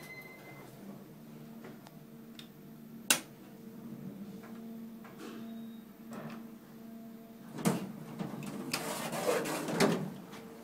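Otis traction elevator car stopped at a floor: a steady low hum, a sharp click about three seconds in, then sliding-door and movement noise building over the last two seconds as the car doors open.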